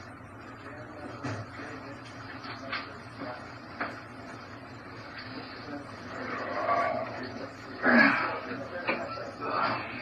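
Steady hiss of a small room picked up by a surveillance microphone, with a few faint knocks; in the last four seconds, indistinct voice sounds, loudest about eight seconds in.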